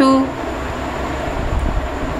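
A steady rushing noise with an uneven low rumble, like a fan or other machine running close by. It follows the end of a spoken word.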